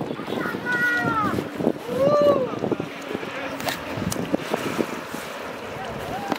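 A person's voice calling out twice in rising-then-falling tones, over wind on the microphone and scattered small knocks.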